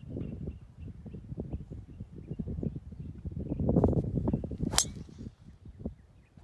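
A golf club striking a golf ball once, a sharp click about three-quarters of the way through, over a low, uneven rumble of wind on the microphone.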